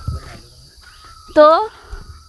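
Quiet outdoor hillside ambience with a faint, steady, high-pitched insect drone. About one and a half seconds in, a single spoken word breaks it.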